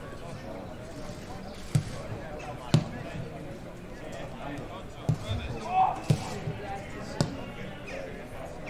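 Footballs being kicked on a grass pitch: about six sharp thuds at irregular intervals, the loudest a little under three seconds in, over distant players' voices and a brief shout near the end.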